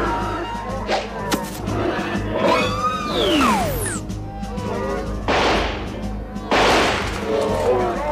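A TV drama action soundtrack: music and shouting voices, a few sharp knocks, a steep falling glide about three seconds in, and two loud rushing bursts of noise about five and six and a half seconds in.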